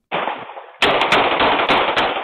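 Gunfire picked up by a doorbell camera's microphone: after a brief rush of noise, several shots in quick succession begin about a second in, loud and heavily distorted. This is an exchange of gunfire.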